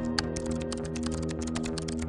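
Calm background music of held, sustained tones, with a fast, even patter of light clicks on top, about ten a second, like keyboard typing.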